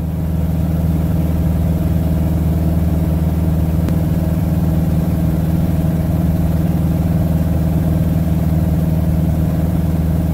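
Piper Super Cub floatplane's piston engine and propeller droning steadily in level cruise, heard from inside the cockpit.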